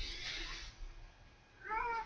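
A house cat meowing: one short meow near the end, rising then falling in pitch.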